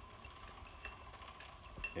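Electric-converted Planet Jr BP1 walking tractor's two-stage chain drive freewheeling with no load: a faint steady hum with light, chime-like tinkling from the freewheel pawls, clicking at irregular intervals.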